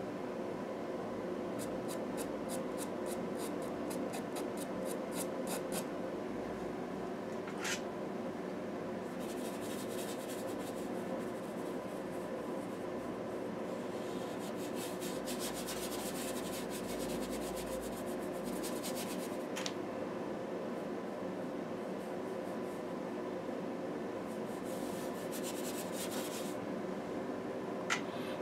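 A chalk pastel pencil scratching across textured paper in quick strokes, about three a second, then a brush rubbing and scrubbing over the pastel in a denser run of strokes. A faint steady hum lies underneath.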